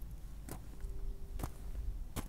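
Faint low rumble with two soft clicks about a second apart and a faint steady tone in the second half.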